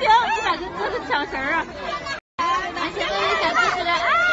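Speech: people chattering, with the sound cutting out completely for a moment about two seconds in.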